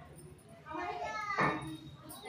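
Voices talking, with a sharp click about one and a half seconds in.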